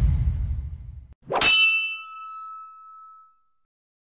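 Logo sound effect: a low rumbling boom that fades out, then a single sharp metallic clang that rings on for about two seconds.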